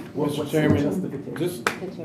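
People talking in a meeting room, with one sharp click about one and a half seconds in.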